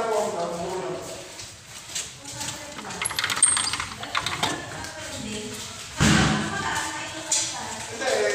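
People talking in the background, with a few light knocks and clicks about halfway through.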